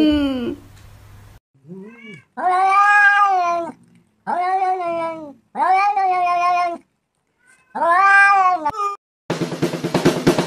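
A domestic cat meowing: a short call, then four long, drawn-out meows of about a second each, each rising and then falling in pitch. Music with drums starts just before the end.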